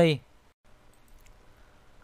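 A man's narrating voice ends a word, then a pause of faint room hum that drops briefly to dead silence about half a second in, with a faint click near the middle.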